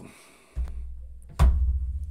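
A plastic coin tube of silver eagles being pushed down into its slot in a plastic monster box, landing with a sharp knock about one and a half seconds in. A low rumble starts about half a second in and carries on after the knock.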